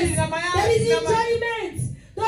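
A woman's voice, amplified through a microphone, singing or chanting in long held notes with gliding pitch. It fades out just before the end.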